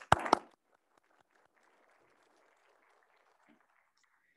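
A few quick hand claps close to a microphone in the first half-second, followed by faint, scattered applause that dies away before the end.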